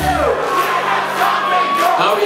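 Live indie rock band playing in a club, with crowd noise. About half a second in, the low bass end drops out, leaving a long held higher note and the crowd.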